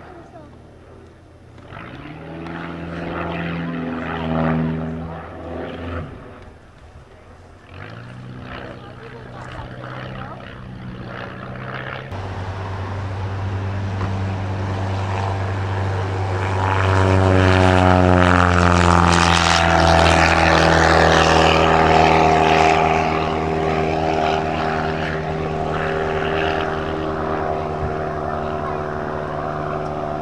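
Propeller-driven aerobatic aircraft engines. The engine note shifts in pitch during manoeuvres; then a biplane makes a low pass, its engine and propeller growing louder and dropping in pitch as it goes by.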